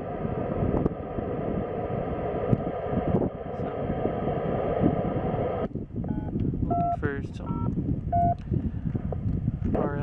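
Receiver audio from a Yaesu FT-897 tuned to a 2-metre repeater linked to an IRLP node. A steady, hissy buzz with fixed tones runs for about six seconds and cuts off abruptly. Then come a series of short two-tone DTMF touch-tone beeps, the dialing used to control the IRLP link, with a brief scrap of voice among them.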